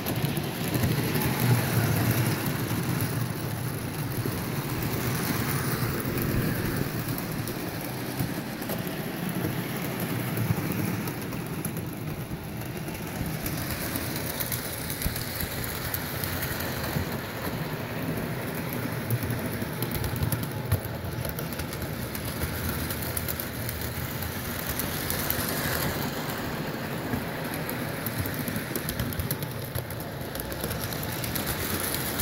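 Electric model train, a steam-style locomotive pulling hopper cars, running on its track: a steady rumbling clatter of wheels on the rails, a little louder in the first few seconds.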